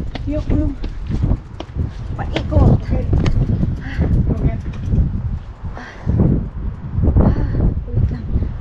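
Rumbling and knocking handling noise from a handlebar-mounted camera as a mountain bike is pushed up stone steps, the frame and wheels jolting over each step, with indistinct voices mixed in.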